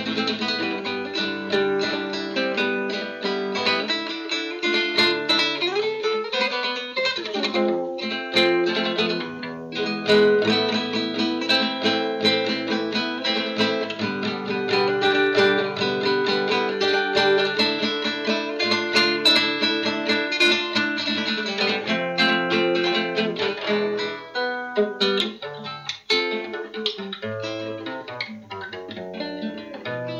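Acoustic guitar music, a steady run of plucked notes and chords.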